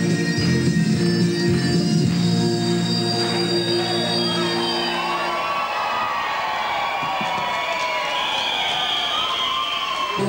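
Stage music with sustained tones plays and stops about five and a half seconds in. The audience cheering and shouting takes over for the rest.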